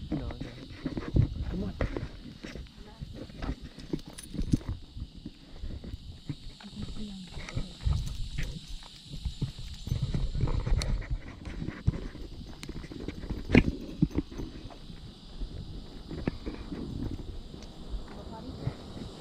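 Footsteps and knocks close to a body-worn camera while walking a dog on a leash along a sidewalk, uneven and continuous, with a few sharper clicks, over a steady high-pitched background hiss.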